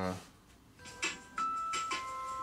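Music playing from a JBL Clip+ Bluetooth speaker, starting about a second in: held notes with sharp hits, the pitch changing partway through. It is a functional check that the reassembled speaker still plays.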